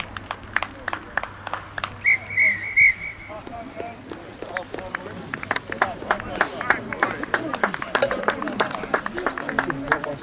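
A referee's whistle blown in three short blasts about two seconds in, over players shouting and calling to each other on the pitch. Many short, sharp clicks run throughout.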